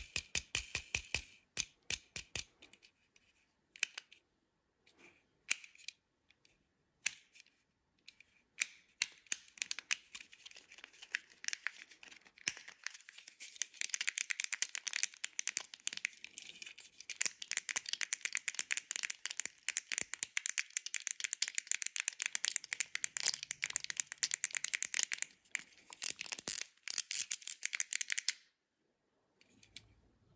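Plastic fidget pad worked by fingers: a quick string of clicks at first, then scattered single clicks, then a long, dense, fast ratcheting run of clicks as the centre roller and buttons are worked, stopping abruptly shortly before the end.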